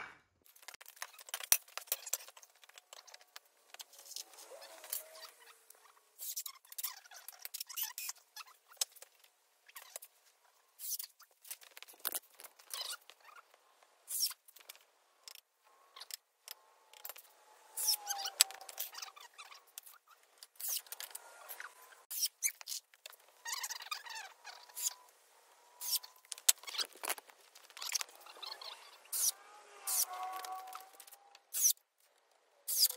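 Irregular sharp clicks and knocks of lumber and tools being handled as a wooden frame is screwed together, with short wavering whines from a cordless drill.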